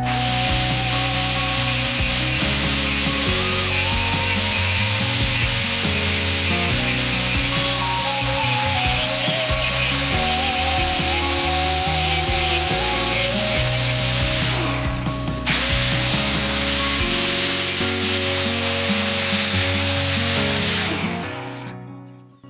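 Power tool grinding a steel knife blank cut from a marble-cutting saw disc: a steady, loud grinding hiss under background music with a stepping bass line. The grinding breaks off briefly about 15 seconds in, resumes, and fades out near the end.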